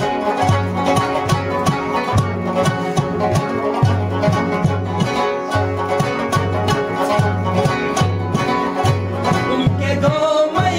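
Instrumental passage of a rubab, a long-necked plucked lute, picking a melody over a steady beat on a daf frame drum.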